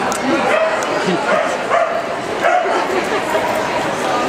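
A dog barking and yipping in short calls several times, over the chatter of a crowd in a large hall.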